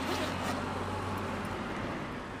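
Low, steady hum of a vehicle engine in street traffic, under a general street noise, fading out near the end.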